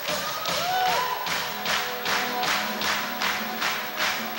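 Live gospel band music: percussion keeping a steady beat of about three strokes a second over a held keyboard chord, with a few short swooping tones near the start.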